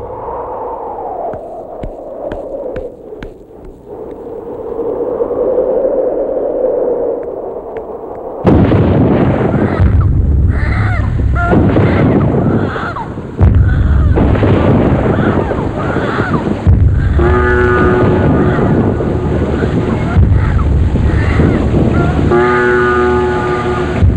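Film soundtrack thunderstorm: a sustained dramatic music tone, then from about eight seconds in, loud thunder claps and rumbling over steady rain hiss, with music chords swelling in.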